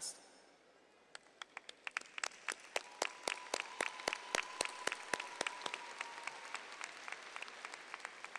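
Audience applause, a scatter of separate claps that starts about a second in, grows thicker, then thins out near the end.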